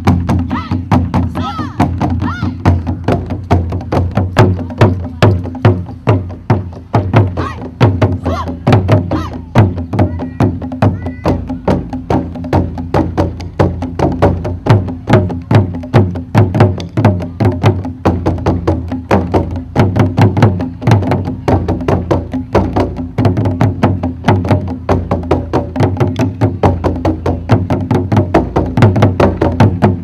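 Japanese taiko ensemble drumming: wooden sticks striking large barrel-bodied drums with tacked hide heads and small rope-tensioned drums, in fast, even, driving strokes. Deep drum booms mix with sharp, cracking hits.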